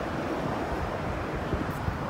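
Wind on the microphone, a steady low rumble and hiss of outdoor air noise.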